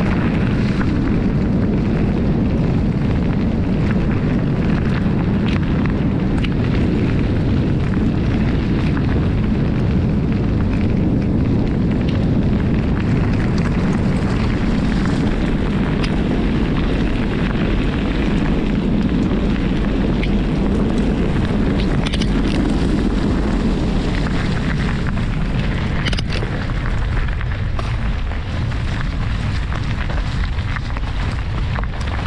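Wind buffeting the microphone of an on-board camera on a moving bicycle, a loud steady rumble, with tyre and gravel noise from riding along a gravel track mixed in and a few faint clicks near the end.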